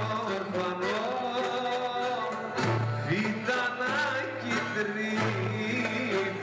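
Live Greek folk music: a man singing a wavering, ornamented melody into a microphone, accompanied by violin, oud and a plucked lute, heard through a PA system.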